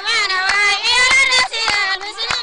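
A group of women singing a traditional Sudanese village song in high voices, with sharp hand claps keeping time.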